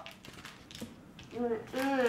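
A few faint taps in a quiet room, then a young girl's voice begins about a second and a half in.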